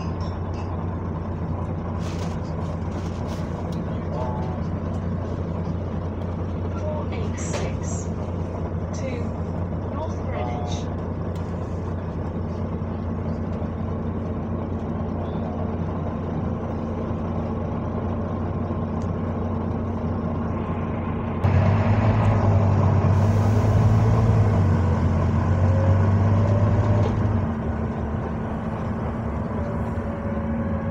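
Bus engine running steadily, heard from inside the passenger saloon. About two-thirds of the way through it gets clearly louder for several seconds, with a hiss and a rising whine, as the bus pulls away, then settles back.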